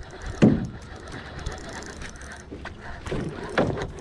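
Spinning reel being cranked steadily, its gears whirring and clicking as line is wound in with a bass on the hook. Two brief louder swishes cut in, about half a second in and near the end.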